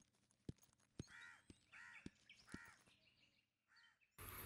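Faint footsteps on a hard corridor floor, about two a second, with four cawing bird calls over them.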